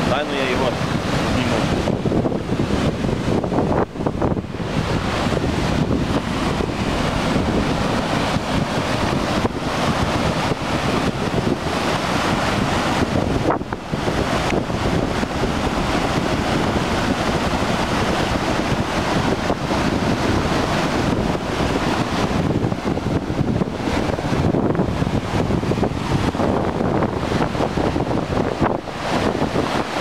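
Floodwater rushing and churning through a breach in a road embankment: a loud, steady rush of turbulent water, with wind buffeting the microphone.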